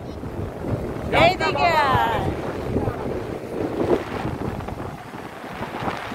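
Wind buffeting the phone's microphone on an open beach, over a steady wash of surf. About a second in, a brief high-pitched voice rings out with a rising and falling pitch.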